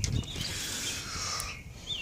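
A sheet of paper slid across a tabletop: a click, then a soft rustling hiss lasting about a second. A short bird chirp sounds faintly near the end.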